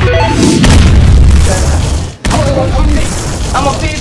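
A loud, deep boom sound effect over music, cutting off suddenly about two seconds in, followed by a voice.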